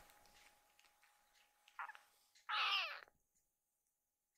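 Kitten meowing: a short mew about halfway through, then a longer, louder mew whose pitch drops at the end.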